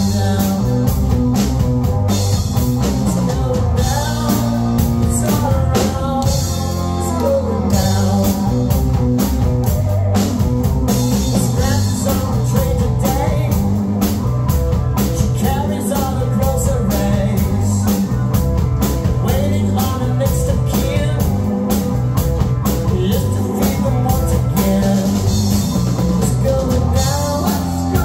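Live rock band playing: electric guitar, electric bass and drum kit, loud and steady throughout.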